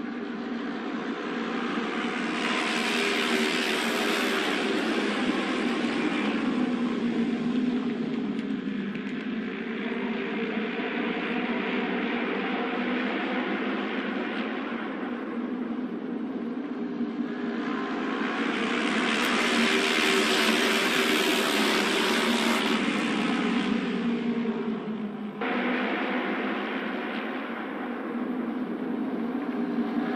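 A pack of Japanese auto race motorcycles, 600 cc twin-cylinder racing engines, running at speed on a trial lap. The sound swells twice as the pack comes past, about 4 and 20 seconds in, then changes abruptly a few seconds before the end.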